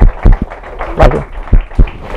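A run of loud, dull thumps hitting a microphone, five or six at irregular spacing in two seconds, with a brief burst of voice about a second in.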